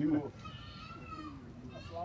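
A man's voice breaks off in the first moment, leaving faint, high-pitched voices in the background.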